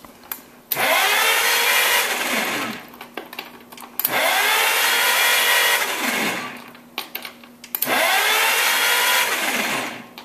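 Chrysler Crown flathead six marine engine cranked over by its electric starter in three bursts of about two seconds each; the starter's whine winds up at each start and falls away as it is let go. To the mechanic listening with a stethoscope it turns over with nothing out of the ordinary.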